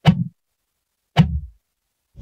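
Two sudden hits about a second apart: a drumstick striking a snare rim that triggers a short sampled whoosh, its pitch shifted from hit to hit by a slow LFO. Each hit fades within a fraction of a second.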